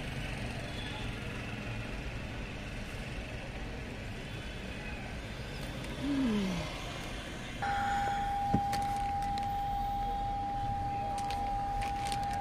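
Toyota Innova HyCross dashboard warning tone: a single steady high tone that comes on suddenly about two thirds of the way in and holds without a break. It is a warning that the hybrid system is stopped.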